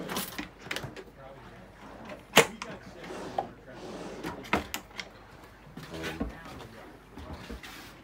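Wooden galley drawers and locker doors on a sailboat being opened and shut, with a series of knocks and clicks from their push-button catches and wood. The loudest is a sharp knock about two and a half seconds in.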